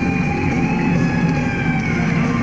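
Heavy metal band playing live: a lead electric guitar holds a long high note that bends slowly in pitch, over distorted rhythm guitar, bass and drums.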